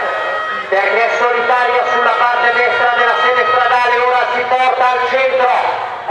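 Continuous male speech: a race announcer's commentary over a loudspeaker.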